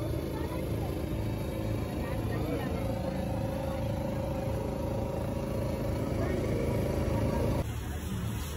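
Busy festival-ground ambience: voices mixed with a steady low rumble. A held tone sounds for several seconds in the middle, and the sound changes abruptly near the end.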